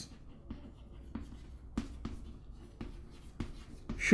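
Chalk writing on a chalkboard: a series of faint, irregular taps and light scrapes as the chalk strokes out words.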